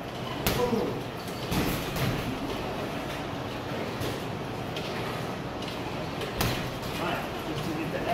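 Gloved strikes landing on a heavy punching bag: a few sharp thuds spread out and irregularly spaced, the loudest about six seconds in.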